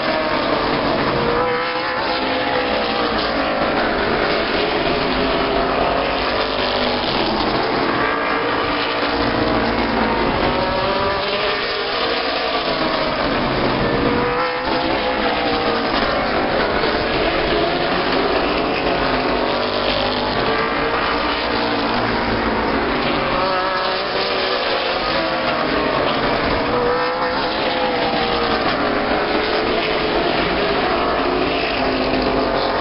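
A pack of late model stock cars racing on a short oval, their V8 engines loud and overlapping, the pitch rising and falling over and over as the cars pass through the turns and by the stands.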